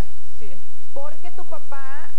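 A woman speaking in short phrases over a steady background hiss and low hum.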